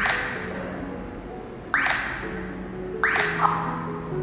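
Three short, sharp clicks about one to one and a half seconds apart, one for each tap on the sat-nav touchscreen, over soft background music with a simple melody.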